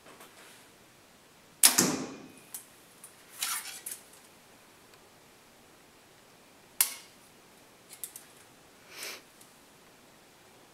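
Compound bow released from full draw: one sharp, loud crack of the string and limbs about two seconds in, with a short ringing tail in a small room. This is followed by quieter clicks and rustles as the bow and the next arrow are handled.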